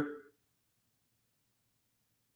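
Near silence after the last word of a man's speech fades out in the first moment.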